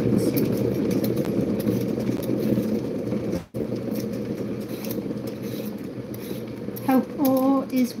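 Hand peeler scraping strips of skin off a raw potato in quick strokes, over a steady low background noise with a faint hum. The noise cuts out for a moment about halfway through.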